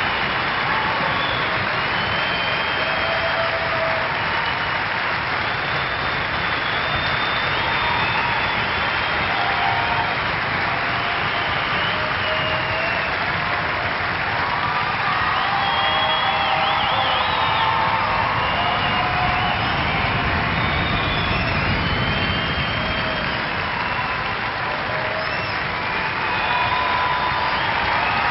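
Large theatre audience applauding and cheering steadily, with scattered short whistles and shouts rising above the clapping.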